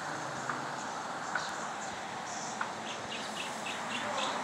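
Small birds chirping, a few scattered chirps and then a quick run of short chirps near the end, over a steady outdoor hiss.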